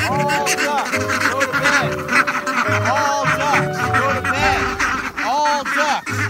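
A flock of domestic ducks quacking over and over, many short overlapping calls, as they walk together toward their house. Background music plays underneath throughout.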